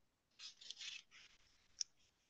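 Faint scratchy rustling in a few short bursts, then one sharp click near the end.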